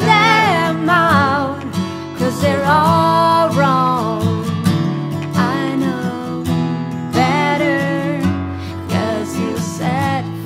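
Singing with a strummed Martin acoustic guitar: a sung melody with held notes and vibrato over steady guitar chords.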